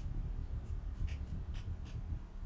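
A steady low rumble with four or five faint, short scratchy clicks scattered through it.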